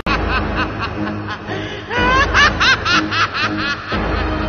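A man laughing aloud in quick "ha" pulses, about four a second. The laughter eases briefly, then a rising whoop about halfway through starts a second run of laughter, over background music.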